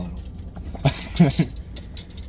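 A car engine idling, heard inside the cabin as a low, steady rumble, with a short vocal sound from a man about a second in.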